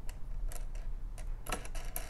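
Light, irregular metallic clicks and ticks of small hardware being handled: a wing nut and washers going onto the threaded post of a work light's hanging hook. There is a quick cluster of clicks about one and a half seconds in.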